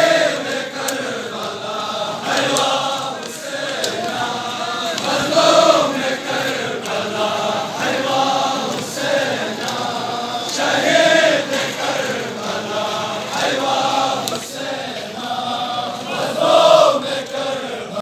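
A large crowd of male mourners chanting a refrain together in a repeated rhythmic pattern, with louder swells every five or six seconds.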